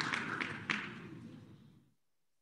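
Recorded applause from an online name-picker wheel's winner sound, dying away with a few last single claps and then cutting off near the end.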